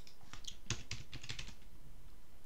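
Computer keyboard typing: a quick run of keystrokes, about a dozen clicks over a second and a half, as a short word is typed.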